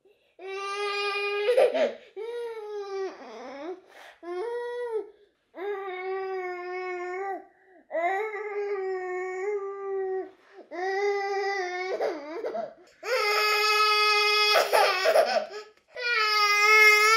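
A feverish one-year-old baby crying in a string of wails, each one to two seconds long with short breaths between, the last and loudest near the end.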